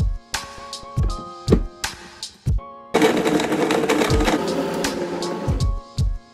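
Background music with a steady beat, broken about halfway through by a countertop blender running for about two and a half seconds, chopping lime wedges in water, before it cuts off and the music returns.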